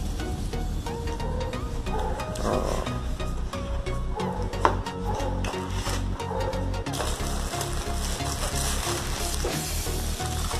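Cardboard box flaps and plastic wrapping handled and crinkling in a run of small clicks and rustles, with one sharper click about halfway through, over background music.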